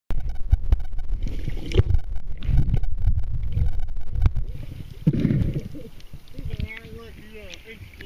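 Muffled water noise picked up by a submerged camera during snorkeling: low rumbling with many knocks and crackles as the water is stirred by swimming. About five seconds in the sound changes as the camera comes up out of the water, and a person's voice is heard near the end.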